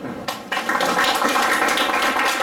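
Audience applauding, the clapping starting about half a second in and keeping up steadily.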